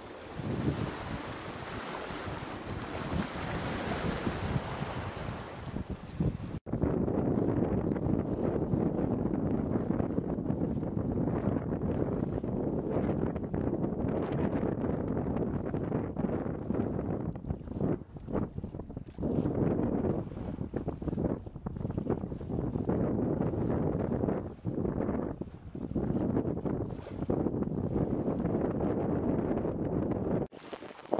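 Wind buffeting the microphone aboard a small sailboat under sail, mixed with water rushing along the hull. About six and a half seconds in the sound changes abruptly from an even hiss to gusty, uneven buffeting.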